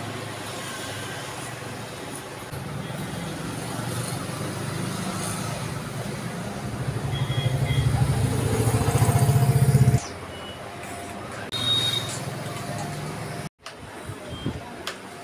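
Electric hair clipper buzzing steadily, growing louder over several seconds and then cutting off suddenly about ten seconds in.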